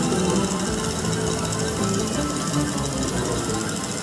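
Lock It Link Piggy Bankin video slot machine playing its bonus music, with a fast, steady rattling tick from the machine as the coin-stack symbol's value cycles up.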